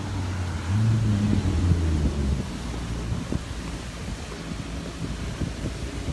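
Road traffic: a car drives past close by, its engine and tyres loudest in the first two seconds or so, then steady traffic noise with wind buffeting the phone microphone.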